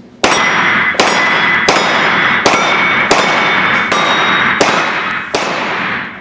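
A rapid string of about eight handgun shots, roughly one every three-quarters of a second, each followed by the ringing clang of a round steel plate target being hit. The shots echo in a large indoor range hall.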